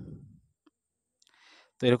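A voice trailing off, then a single faint click and a short breath before speech starts again near the end.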